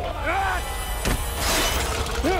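A short shout, then a little past halfway a sudden crash with a bright hissing rush like breaking glass, over background music.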